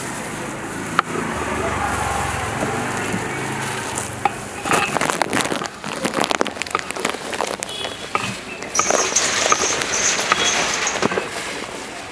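Long serrated knife cutting through mango and striking a chopping block: irregular runs of sharp knocks in the second half, over street noise and background voices.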